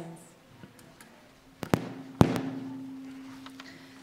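Sharp knocks on a lectern microphone as a reader settles in to read: two pairs of quick knocks a little under halfway in, the second pair loudest. A low steady hum starts with the second pair and holds to the end.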